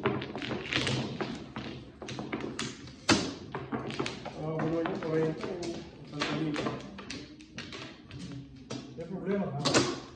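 Mahjong tiles clacking against each other and the table as they are stacked into walls and pushed into place: a run of quick irregular clicks, the loudest clack about three seconds in, with people talking over it.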